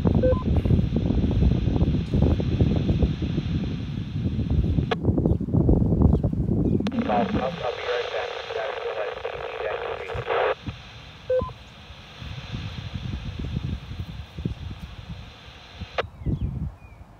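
Received voice transmission coming through the TYT TH-8600 transceiver's speaker, mixed with static so that no words come through clearly. A short beep sounds near the start and another about two-thirds of the way through.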